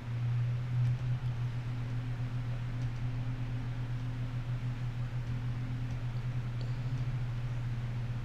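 Steady low machine hum with an even airy hiss: a gaming PC's cooling fans and liquid-cooler pumps running while a GPU benchmark loads the graphics card.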